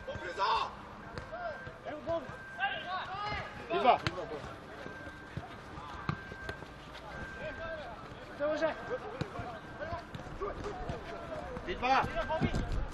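Football being kicked on an artificial-turf pitch: a few sharp thuds, the loudest about four seconds in. Players' shouts and calls come and go around them.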